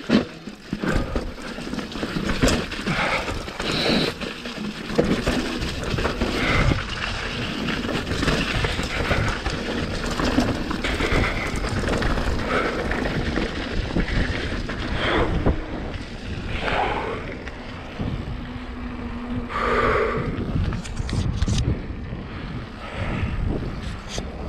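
Mountain bike riding fast down a rough dirt trail: tyres rolling over mud, stones and roots, with the frame and parts rattling and knocking. Wind rushes over the camera's microphone.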